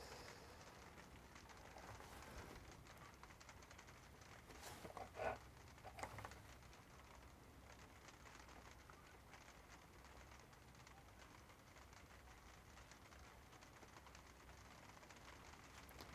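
Near silence: room tone, with a couple of faint, short sounds about five and six seconds in.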